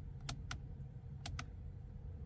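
Steering-wheel OK button on a Ford Mustang clicking as it is pressed and released, twice about a second apart, each press a quick double click. A faint low rumble runs underneath.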